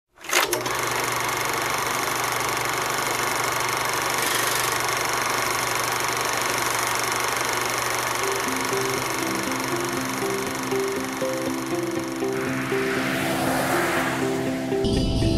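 Film projector sound effect, a steady mechanical whirring clatter, under an old-style countdown leader. A simple melody of spaced notes comes in about eight seconds in, and a swell of noise builds near the end.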